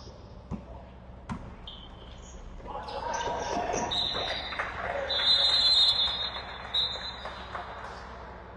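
Basketball game on a hardwood court: a few ball bounces and knocks, then rising player noise and shouting from about three seconds in. From about four seconds a referee's whistle blows a long, loud blast with a short break, stopping play.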